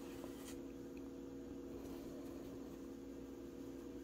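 Faint rustling and scratching of acrylic yarn being worked through crocheted fabric with a yarn needle while knotting off, with a soft tick about half a second in, over a steady low hum.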